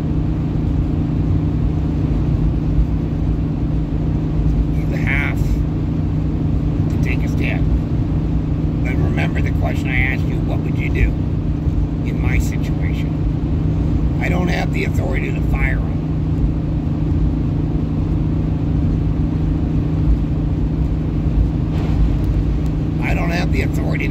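Steady low drone of a car's engine and tyres, heard from inside the cabin while driving along a paved road.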